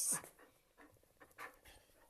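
A spaniel panting in a few quiet, short breaths, after a brief louder sound right at the start.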